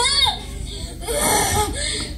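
A young woman's high-pitched whimpering cries: a short rising-and-falling wail right at the start, then a second, longer cry about a second and a half in.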